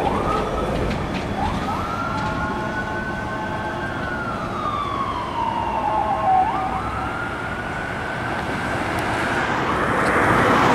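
Ambulance siren on a slow wail. The pitch sweeps up fast about a second in, sinks slowly through the middle, then sweeps up again a little past halfway and climbs slowly. Steady road-traffic noise runs underneath.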